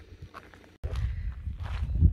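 Low, uneven rumble of wind buffeting the camera microphone outdoors. It drops out for an instant at an edit just under a second in, then resumes.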